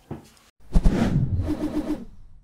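Short chapter-title sound effect that comes in suddenly about half a second in, ending in a quick run of pulsing notes.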